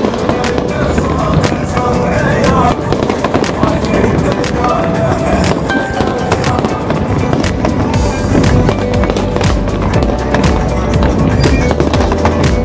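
Fireworks display: a long run of bangs and crackles, thickest in the last few seconds, with music playing throughout.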